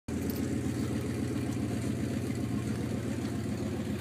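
A truck's engine idling steadily, heard from inside the cab: a low, even rumble with a fast regular pulse.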